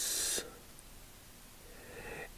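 A person breathing out close to the microphone: a short steady hiss that stops under half a second in, followed by faint room tone.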